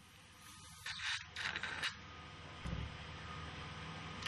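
Faint clicks and scrapes of metal surgical instruments, a suture needle holder and tissue forceps, a few short ones in the first two seconds and a dull knock a little later, over a low hiss.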